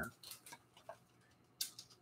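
A few faint, sparse light clicks and ticks, with a slightly louder tap near the end: a clear plastic food container and dry Chex party mix being handled at a ceramic bowl, the container set down on the counter.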